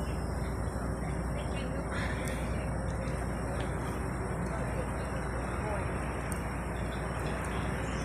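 Steady low rumble of a vehicle engine running, with no distinct events.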